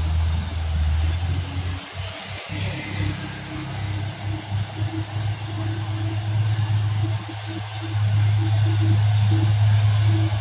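Loaded Mitsubishi truck's diesel engine pulling up a steep grade, a steady low drone that gets louder about eight seconds in as it nears. Music plays over it.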